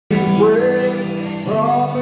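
A man singing into a handheld microphone over amplified backing music, holding long notes that slide up in pitch.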